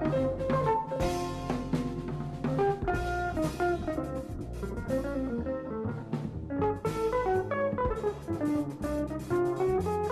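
Background music: an instrumental with guitar and drums, playing a busy melody of quick plucked notes over a steady beat.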